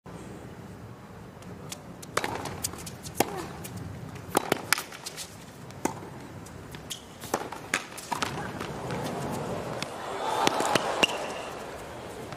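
Tennis rally on a hard court: sharp racket strikes and ball bounces, a second or so apart, with crowd noise swelling near the end.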